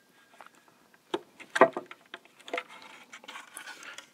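Hands working a rubber grommet into a hole in a plastic battery-case lid: a few sharp clicks and knocks of plastic, with light scraping and rubbing between them.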